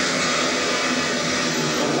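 Speedway motorcycles' 500 cc single-cylinder engines running steadily as the pack races round the track, heard as a continuous engine noise on a television broadcast.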